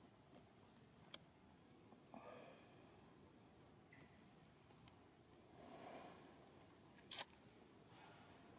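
Near silence, broken by a faint click about a second in, a few faint short sounds, and one brief sharp burst of hiss about seven seconds in.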